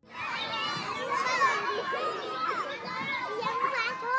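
A crowd of children's voices chattering and calling out together, like children at play, starting suddenly and fading out just after four seconds.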